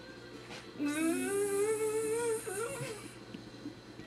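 A person humming one drawn-out note for about two seconds, sliding up in pitch and wavering at the end, with a thin high whine alongside.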